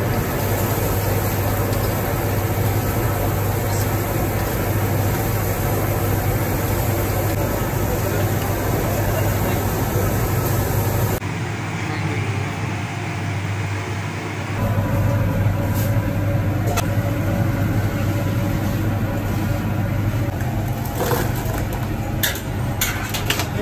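Steady roar with a low hum from a falafel kitchen's frying station, with hot oil sizzling in a deep wok as falafel fry. Near the end, a few metallic clinks as a wire strainer lifts the fried falafel out.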